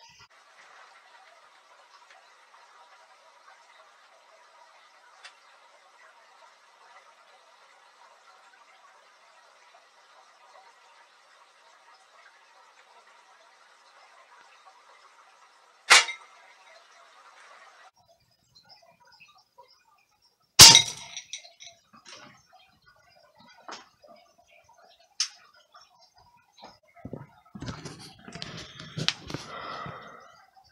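A .177 airgun shot into steel food cans: a sharp click about 16 seconds in, then a louder single crack about 20 seconds in. A faint steady hiss runs before the click, and a few light clicks and handling knocks come near the end.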